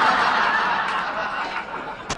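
Comedy club audience laughing at a punchline, a dense crowd laugh that fades away near the end.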